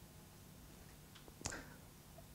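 Near silence: faint steady room hum, with one brief soft click about one and a half seconds in.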